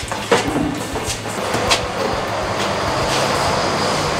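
Large particleboard sheets being carried and handled: a few sharp knocks, about a second apart, over a steady rumbling din.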